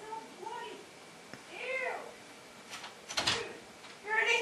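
A few short, high vocal calls that rise and fall in pitch, with a brief noisy scrape or rustle a little after three seconds.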